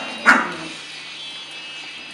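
A small dog barks once, a single short sharp bark about a quarter second in.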